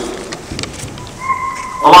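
A pause in a man's amplified speech, heard as room tone. A short steady high tone sounds for about half a second just before his voice comes back.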